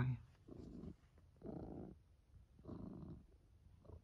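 Tortoiseshell cat purring softly while being stroked. The purr comes in three swells about a second apart, one with each breath.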